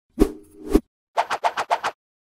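Transition sound effects for an animated outro: two loud hits about half a second apart with a swish between them, then a quick run of short pops.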